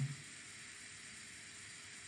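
Faint steady hiss of recording background noise (room tone), with the tail end of a spoken word just at the start.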